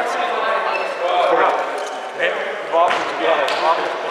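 Several young men talking at once, with a few sharp knocks and one louder thud about three seconds in.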